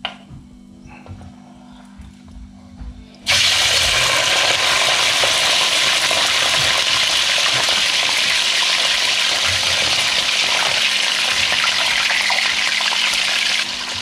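Cubed tofu dropped into hot oil in a carbon-steel wok, which bursts into a loud, steady sizzle about three seconds in. Before that there is only a faint hum and a few light knocks.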